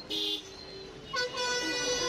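A vehicle horn gives one short toot just after the start. A little over a second in, loud roadside DJ music starts up with a long held note under a moving melody.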